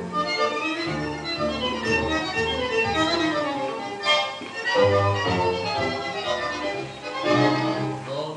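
Recorded tango music: an instrumental passage led by violins over low bass notes.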